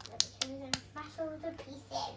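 Hard plastic LEGO bricks and a plate being handled and pressed together, giving two sharp clicks in the first second, with someone talking quietly alongside.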